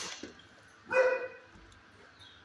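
A dog barks once, a single loud pitched bark about a second in, preceded by a brief sharp sound at the start.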